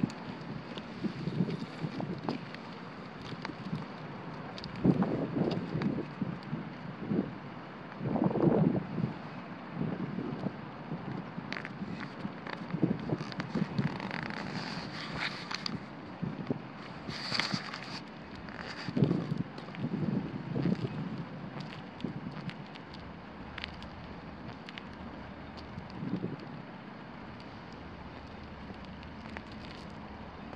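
Wind buffeting the microphone in irregular gusts over a steady outdoor hiss, with a few brief rustles.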